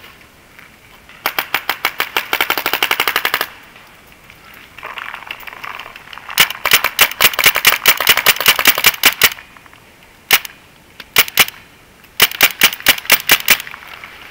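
Paintball marker firing in three fast strings of shots, roughly eight a second, with a few single shots in between.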